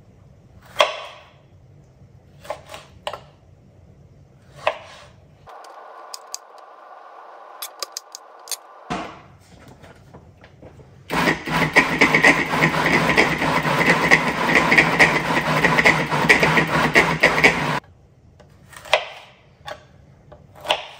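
A countertop food processor runs loudly for about seven seconds, chopping tomatoes and onion into salsa, then cuts off suddenly. Knife strokes knock on the cutting board before and after it runs.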